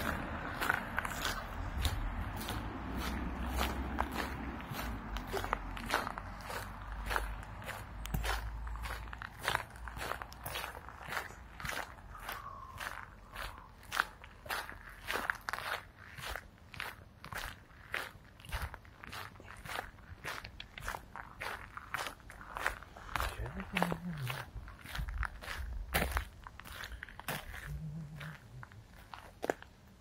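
Footsteps crunching on a gravel path at a steady walking pace, about two steps a second, stopping near the end.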